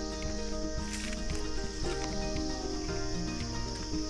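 Instrumental background music, over a steady high-pitched chirring of crickets.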